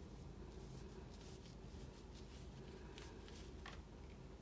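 Faint, short swishes of a large ink-loaded brush sweeping across paper, several strokes in a row, the strongest near the end, over a low steady hum.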